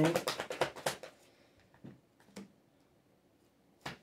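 A deck of tarot cards being shuffled by hand: a quick run of soft card clicks and slaps for about the first second, then mostly quiet with a few faint isolated taps.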